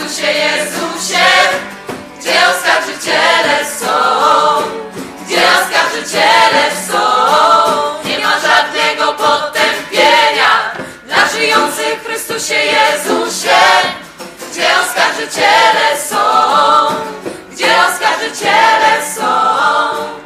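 Music: a group of voices singing a Polish religious pilgrimage song in chorus.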